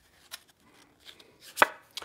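Tarot cards handled by hand as the next card is drawn off the deck: a few light taps and rustles, then one sharp click about a second and a half in.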